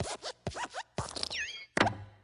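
Cartoon sound effects of the animated Pixar desk lamp hopping: a few thumps with springy, squeaky sliding tones between them. The loudest thump comes near the end, as the lamp squashes the letter I flat.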